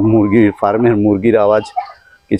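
Poultry calling: a short call, then a longer one with a warbling pitch that stops about three-quarters of the way through.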